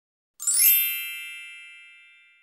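A single bright, bell-like chime struck about half a second in, ringing on and slowly fading away.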